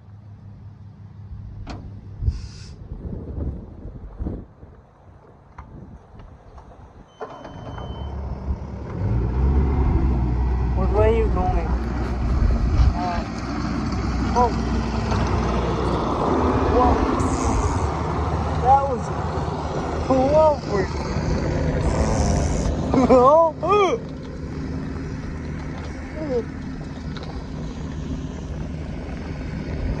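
A Bobcat's diesel engine running close by, getting much louder about seven seconds in as its exhaust blows straight onto the microphone, puffing black smoke.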